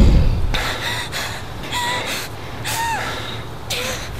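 A young man gasping for breath in several sharp, ragged breaths about once a second, some with a brief voiced catch. At the start, the tail of a deep rumbling boom fades out.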